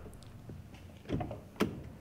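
Quiet inside a pickup truck's cab: the thud of a door fades out at the start, then a soft shuffle a little after one second and a single sharp click a little past one and a half seconds.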